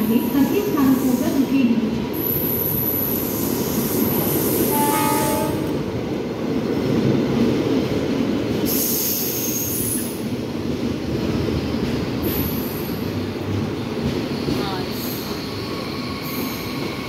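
Express train coaches running through a station alongside the platform: a steady rumble of wheels on rail, with brief high squeals coming and going. The rumble eases a little near the end as the last coach goes by.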